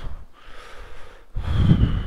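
A man's breath close to the microphone: a soft intake of air, then a louder, heavier exhale through the nose about a second and a half in, a disgusted reaction to a foul smell of excrement.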